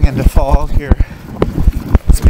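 Fat tyres of an electric recumbent trike rolling over a rocky gravel trail, with rapid, irregular knocks and bumps. A brief wordless voice sound comes about half a second in.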